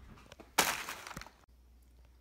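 Paper fast-food burger wrapper crinkling as it is handled, with one sharp crackle about half a second in and a few small ticks after it, then it stops abruptly.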